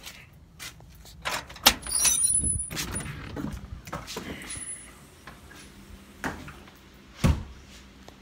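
A house door being opened and shut: a run of clicks and knocks with a brief high squeak about two seconds in, and a sharp knock near the end.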